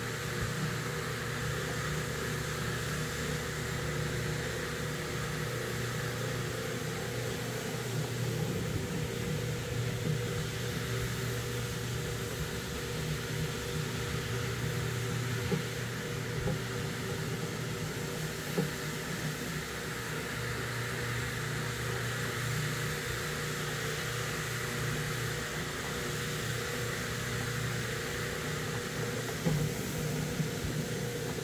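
Electric rotary floor machine running steadily as its brush scrubs shampoo into a wet area rug: a constant motor hum with the scrub of the brush on the wet pile and a few small clicks.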